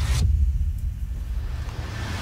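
Cinematic logo-intro sound design from a music video: a deep, steady bass rumble with a short whoosh at the start and a second whoosh swelling up near the end.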